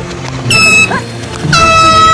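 Handheld air horn blasted twice, each blast about half a second long and about a second apart, loud and piercing over background music.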